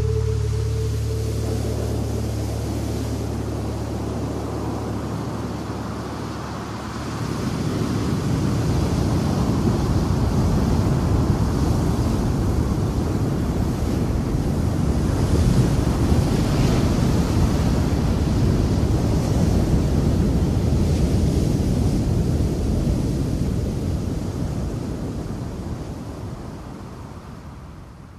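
Rushing wind noise that swells louder about seven seconds in and fades away over the last few seconds.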